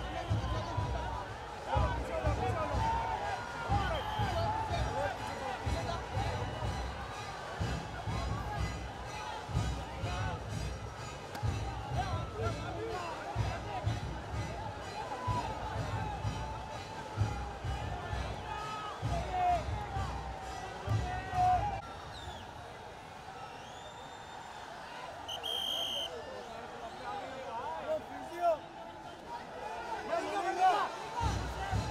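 Dense crowd of many people talking and shouting over one another, with music in the mix and low thuds from the jostled camera for most of it. The crowd noise thins out in the last third, and a brief high-pitched tone sounds a few seconds before the end.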